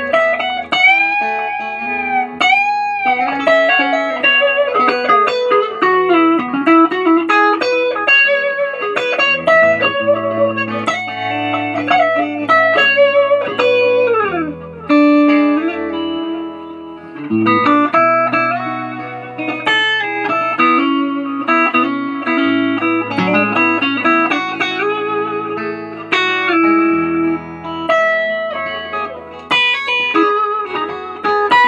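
Telecaster-style electric guitar fitted with Nuclon magnetic pickups, played lead: long sustained notes with bends and vibrato, quick melodic runs, and a slide down the neck about fourteen seconds in, over steady low notes.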